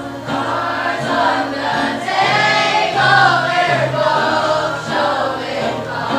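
A group of schoolchildren singing a song together as a choir, holding notes in a flowing melody.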